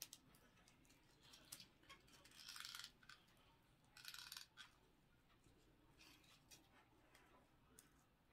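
Faint handling sounds of artificial glittered leaf sprigs being pushed into a wreath form: scattered light clicks, with two short rustles about two and a half and four seconds in.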